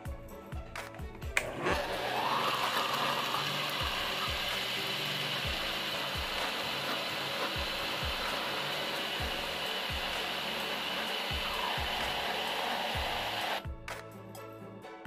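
Electric countertop blender switched on with a click, its motor running steadily as it blends a liquid ice cream base with peanuts, then cutting off sharply just before the end.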